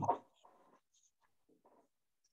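The last syllable of a spoken word, then near silence on a video-call line, broken only by a couple of very faint, brief sounds.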